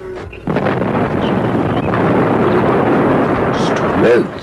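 Radio-drama sound effect of a house fire: a loud, steady rushing noise that cuts in suddenly about half a second in.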